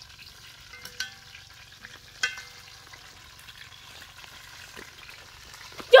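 Chicken pieces frying in a pan with a steady sizzle, stirred with a metal spoon that clinks against the pan twice, about one and two seconds in.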